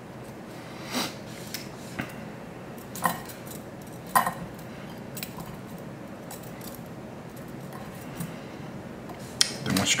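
Light clicks and clinks of small fly-tying tools being handled, a few separate sharp ticks about a second apart early on, over a faint steady background.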